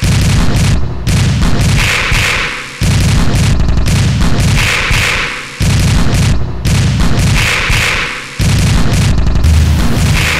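Electronic music: a loud, bass-heavy phrase repeating about every three seconds, each time fading away before the next starts abruptly.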